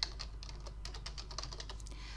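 Typing on a computer keyboard: a quick, steady run of key clicks.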